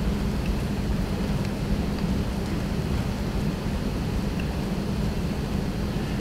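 Steady room tone: an even hiss with a continuous low hum and a few faint ticks.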